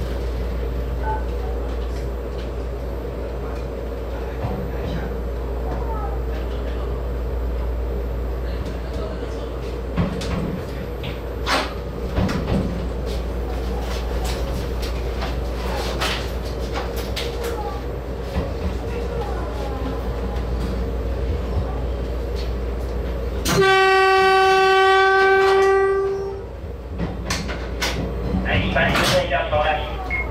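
Taiwan Railway EMU800 electric multiple unit heard from its driver's cab: a steady low running hum with scattered sharp clicks as it rolls over rail joints and points. About three-quarters of the way through, one steady horn blast of about two and a half seconds, the loudest sound.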